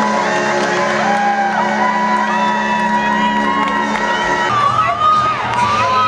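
Children shouting and cheering over arena music from the PA playing held notes. The held note drops to a lower one about four and a half seconds in.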